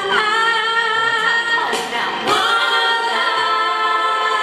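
Voices singing in harmony, holding long notes with vibrato, with a swooping slide in pitch around the middle before settling onto a held chord.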